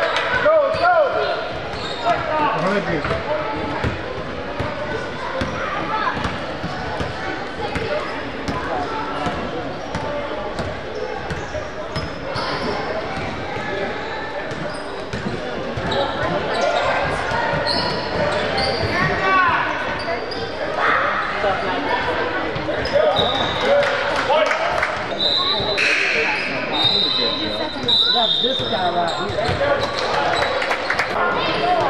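Basketball bouncing on a hardwood gym floor and sneakers squeaking on the court, over shouts and chatter from players and spectators echoing in the gym.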